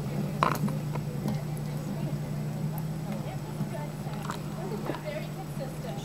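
A horse's hoofbeats on the sand footing of a dressage arena, heard as a few scattered soft strikes, over a steady low hum and faint voices in the background.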